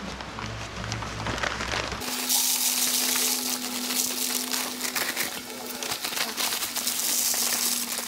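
Dry cement mix poured from a paper bag into a plastic bucket among plastic pipes. It starts suddenly about two seconds in as a steady gritty hiss with many small clicks, alongside a steady hum.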